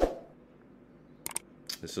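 Computer clicks: one sharp click at the start as a paused video is set playing, then a quick double click about 1.3 seconds in and another click shortly after.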